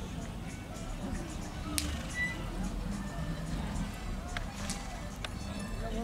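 Faint background music and distant crowd voices, with a couple of brief sharp clicks.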